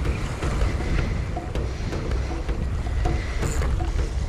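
Wind buffeting the microphone, with a Shimano Twin Power XD spinning reel being cranked in a steady retrieve underneath, its turns giving faint ticks about twice a second.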